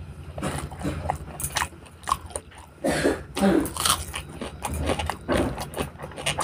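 Close-up eating sounds: a man chewing mouthfuls of rice and spicy pork fry, with many short smacking clicks from the mouth and a few louder bursts in the middle.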